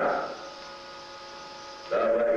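A steady electrical hum. A louder pitched sound fades out in the first moments, and another begins just before the end.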